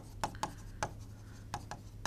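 Pen writing on an interactive display board: irregular sharp taps and short strokes of the pen tip on the screen, about five in two seconds, over a low steady room hum.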